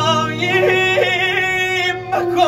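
A man singing a long, wavering, ornamented vocal phrase over steady instrumental backing music.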